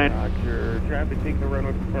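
Cabin sound of the BETA CX300 all-electric aircraft on its takeoff roll at takeoff power: a steady low rumble with one steady hum tone, without the roar of a piston engine.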